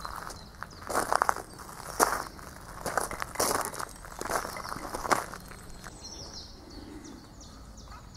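Footsteps of a person walking on a sandy, gravelly woodland path: a series of uneven steps over the first five seconds, then the steps stop. Faint bird chirps can be heard in the quieter end.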